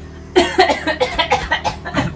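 A woman coughing: a quick string of harsh coughs starting about a third of a second in, from something she breathed in while laughing.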